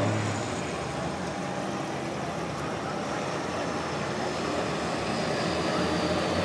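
Diesel pulling tractor engine running steadily some way down the track, a steady engine noise without clear strokes.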